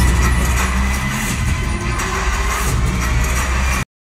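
A film soundtrack played loudly through cinema speakers: dense music with heavy bass, cutting off suddenly near the end.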